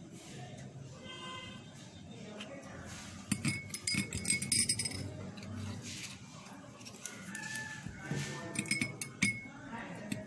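Metal spoon clinking against a small drinking glass while honey is stirred into juice. The clinks come in quick runs, one about three seconds in and another after about eight seconds.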